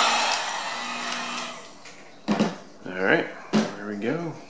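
Handheld electric heat gun blowing hot air to shrink heat-shrink tubing over soldered LED wire joints, a steady rushing with a faint motor hum, dying away over the first two seconds.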